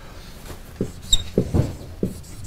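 Dry-erase marker writing on a whiteboard: a few soft knocks as the marker meets the board, and a short high squeak about a second in.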